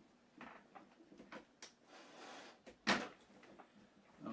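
Faint light clicks and knocks of handling, then breath blown onto a hand-held vane air flow meter: a soft breathy blow, then one short sharp puff near the end.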